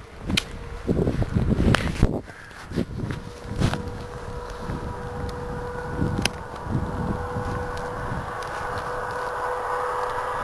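Distant highway traffic heard as a steady hum with a faint held tone, rising slightly toward the end. Over the first few seconds there are irregular thumps, rustles and a few sharp clicks.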